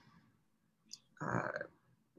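A pause in a woman's speech: a faint click about a second in, then a short, creaky spoken "a" as she hesitates.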